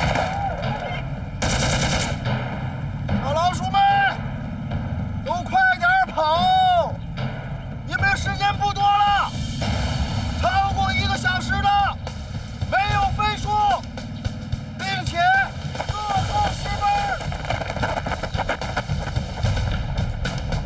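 Rapid, continuous gunfire crackling throughout, with a group of men shouting together in short calls about every two seconds. A brief, sharp burst stands out about a second and a half in.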